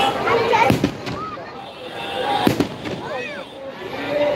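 Fireworks going off: two sharp bangs about two seconds apart, over the voices and shouts of a large crowd.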